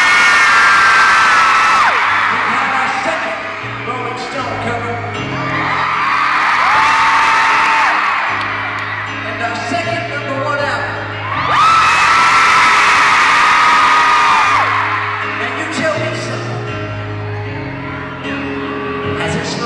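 A grand piano played slowly, low notes and chords changing every second or so, under a crowd of fans screaming and whooping in three loud waves: at the start, around six seconds in, and from about eleven to fifteen seconds in.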